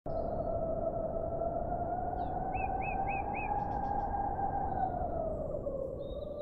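Small birds chirping, with a quick run of four alike chirps near the middle and a few fainter calls, over a steady droning tone that sinks slightly near the end.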